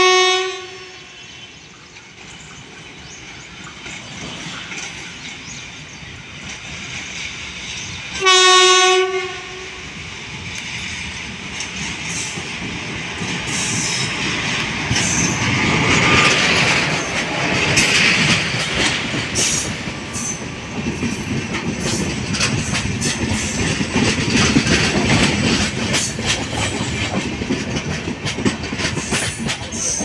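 WCAM3 dual AC/DC electric locomotive arriving with an express train. The tail of a horn blast sounds at the start, and a second single-tone horn blast of about a second comes about eight seconds in. The locomotive and its coaches then pass close by, their running noise and wheels clicking over the rails growing louder from about ten seconds in.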